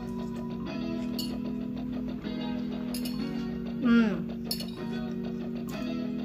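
Soft background music with a plucked guitar, overlaid by a few light clinks of a metal fork against a plate. A short hummed "mm" of enjoyment comes about four seconds in.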